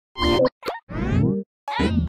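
Cartoonish sound effects for an animated title card: four quick, separate pops and blips in two seconds, the last two sweeping upward in pitch.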